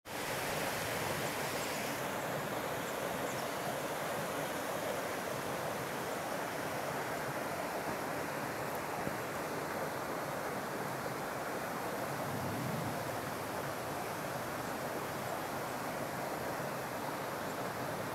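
A small forest creek running over rocks between snowy banks: a steady, even rushing of water.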